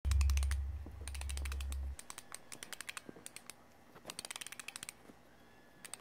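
Short runs of quick mechanical clicks over a low hum that cuts off abruptly about two seconds in; the clicking continues on its own after that, quieter.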